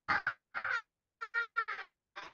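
A run of about six short honking calls from fowl, coming in quick bursts over two seconds.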